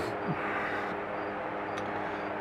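Steady low background hum, with one faint small click near the end as a part is lifted off the end of the lathe spindle by hand.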